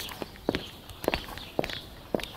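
Footsteps on a cracked concrete garden path, about two steps a second.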